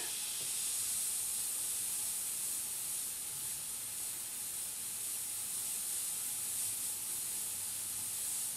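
Iwata HP-B airbrush hissing steadily, a constant high hiss of air and paint leaving the nozzle as it sprays.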